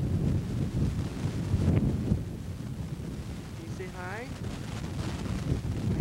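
Wind buffeting a camcorder microphone: a low rumble, strongest in the first two seconds. About four seconds in there is one short, high, gliding voice-like sound.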